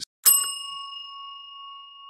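A single bright bell ding, the subscribe-bell sound effect, struck about a quarter second in and ringing on with a clear tone that slowly fades.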